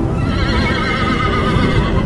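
A horse neighing: one long, wavering whinny that starts just after the beginning and lasts to the end, over a dense low rumble of galloping hoofbeats.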